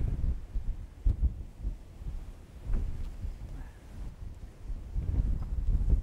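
Gusty wind buffeting the microphone: an uneven low rumble that rises and falls.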